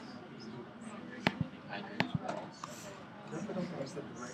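Murmur of many students talking at once in a lecture room, discussing with their neighbours, with two sharp knocks about a second and two seconds in.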